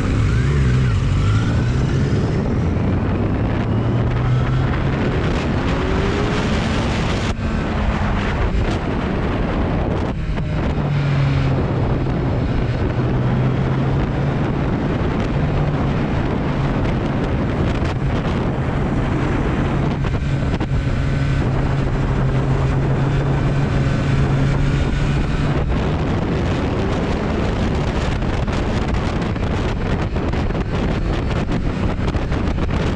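Kawasaki Z900's inline-four engine running under way, its note rising over the first few seconds as the bike accelerates and then holding steady, with heavy wind noise on the microphone.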